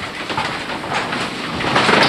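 Irregular clatter of knocks and rustling as people move about on a wooden floor and handle their gear.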